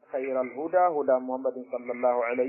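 Speech only: a man speaking continuously in a lecture, the recording narrow and thin like a radio or phone line.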